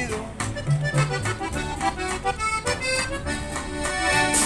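Accordion playing a melodic run over a rhythmic bass line in an instrumental break of a corrido, between sung lines.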